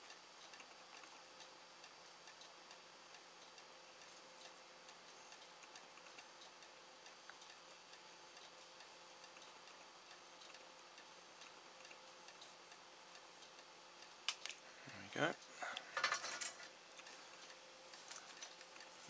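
Faint room tone with a steady thin high whine and a low hum, and a few small sharp clicks near the end as the servo is handled.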